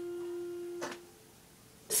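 A single held keyboard note ringing on steadily, then dying away about a second in.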